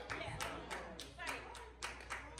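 Hands clapping in a steady rhythm, about three claps a second.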